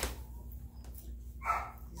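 A three-week-old Rhodesian Ridgeback puppy gives one short, high whimper about one and a half seconds in, over a low steady hum.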